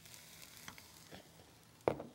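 Faint kitchen handling sounds: a soft rustling haze with a few small ticks, and one sharper click just before the end.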